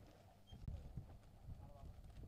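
Near silence: faint outdoor background noise with a few soft, irregular low thumps.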